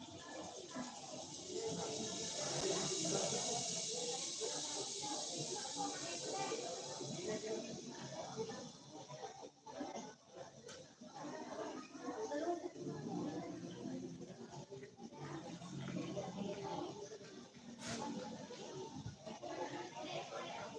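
Indistinct voices talking, with a steady high hiss over the first eight seconds or so.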